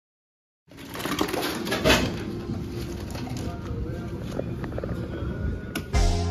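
Crowd of many people talking at once in a large hall, starting abruptly just under a second in, with a sharp clatter about two seconds in.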